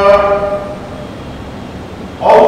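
A man's chanting voice holds a long note that ends about half a second in and dies away in reverberation, leaving a low hum until the next held phrase begins just after.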